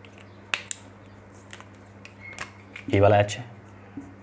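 Whiteboard marker tapping and writing on the board, with two sharp taps about half a second in and a few lighter ticks after. A short burst of a man's voice comes about three seconds in, the loudest sound, over a steady low hum.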